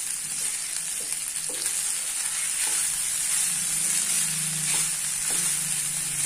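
Wooden spatula stirring and turning cooked rice through a carrot-tomato masala in a nonstick frying pan, scraping the pan in repeated short strokes over a steady sizzling hiss. A low hum comes in about halfway.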